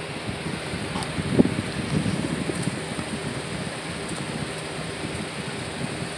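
Box fan running with a steady whooshing hum. Rustling and a soft thump about one and a half seconds in, as the phone filming is handled close to the microphone.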